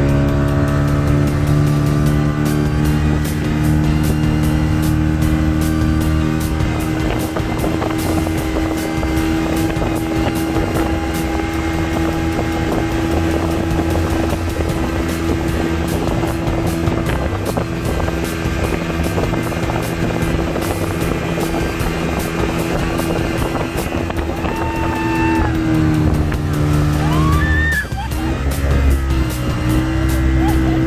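Motorboat engine running steadily under load while towing a banana boat, over the rush of the boat's wake. Near the end the engine note dips briefly in pitch and then comes back up.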